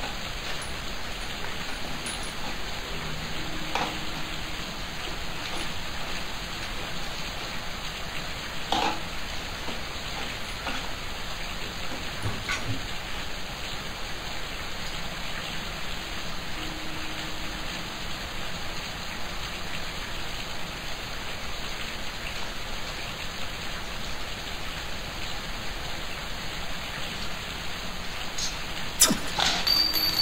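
A steady, even hiss like rain, with a few faint knocks about 4 and 9 seconds in.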